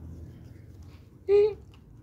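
Faint room background with one brief, high-pitched vocal sound from a person about one and a half seconds in.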